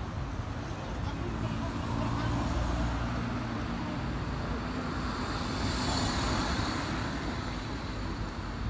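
Street traffic: a car's engine hums low and steady in the first few seconds, then a passing car's engine and tyre noise swells to a peak about three-quarters of the way through and fades.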